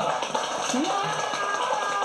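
Indistinct voices talking.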